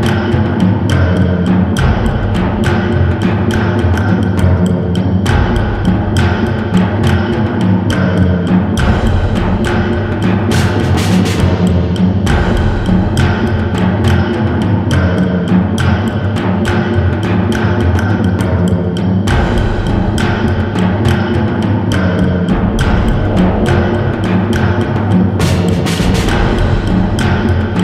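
Instrumental electronic music: dense, driving drums over a bass line that moves to a new note every few seconds.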